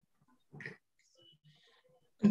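Near silence between speakers on a video call, with one brief faint sound about half a second in.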